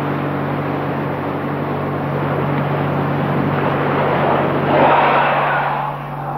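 Steady low hum under constant hiss, the noise of an old film soundtrack, with a louder rush of noise about five seconds in.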